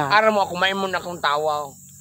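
A man talking in a few drawn-out, wavering phrases that stop shortly before the end, over a faint steady high chirr of insects.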